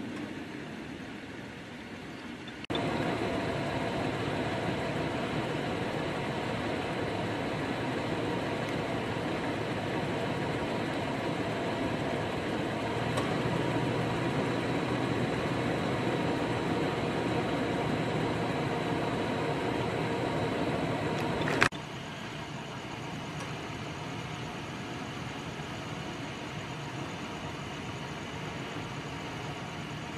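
Steady mechanical hum with a few held tones. It jumps louder suddenly about three seconds in and drops back just as suddenly, with a sharp click, about 22 seconds in.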